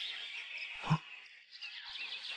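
Faint birdsong: small birds chirping in the background, with a brief low sound about a second in.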